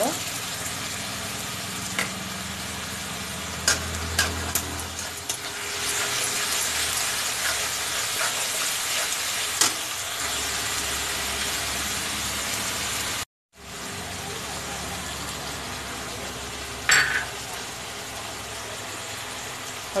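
Ground onion, ginger and garlic paste sizzling steadily in hot oil in a kadhai, with a steel spatula now and then scraping and clicking against the pan. The sound breaks off completely for a moment about two-thirds of the way through.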